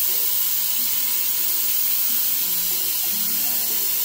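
Electric pressure cooker venting through its steam release valve during a quick pressure release, a steady hiss of escaping steam.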